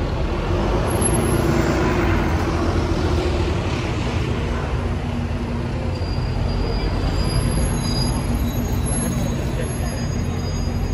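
Road traffic passing: a heavy vehicle's engine swells and fades over the first few seconds, over a steady low traffic rumble.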